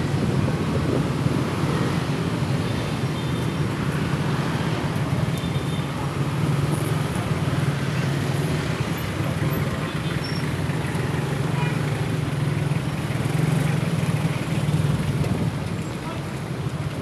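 A vehicle engine running at a steady low hum, with road and traffic noise, while moving slowly through city traffic.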